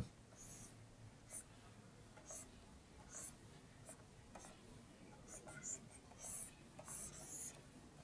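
Faint, scratchy strokes of a stylus nib drawn across a graphics tablet, a run of short separate strokes as lines are sketched.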